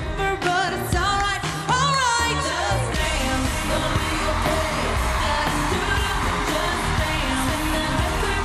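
Female pop singer singing live into a handheld microphone over an electronic dance-pop track with a steady beat; her held, wavering vocal line gives way about three seconds in to a denser instrumental stretch.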